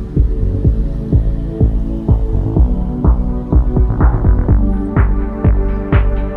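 Background electronic music with a steady kick drum at about two beats a second over a bass line. Brighter percussion joins in the second half.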